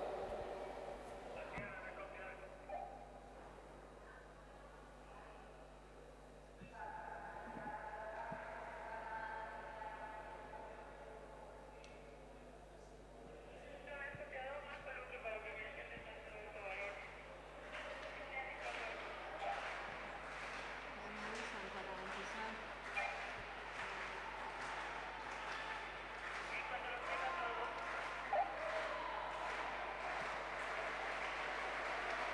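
Faint, distant voices and crowd murmur echoing in a large indoor sports hall, with scattered faint knocks.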